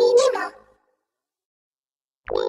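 A short voice-like sound, run through a vocoder effect, lasting about half a second and then cutting to silence.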